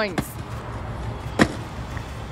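Steady rumble of road traffic, with one sharp knock about one and a half seconds in.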